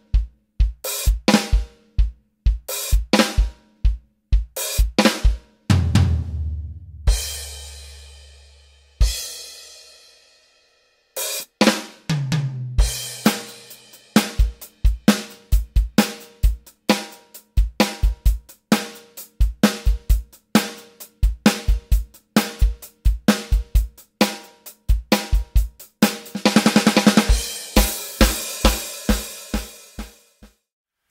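Electronic drum kit played as a rock beat of bass drum, snare and hi-hat. About six seconds in, a cymbal crash rings out and the beat stops for a few seconds before restarting. Near the end there is a fast roll of strikes.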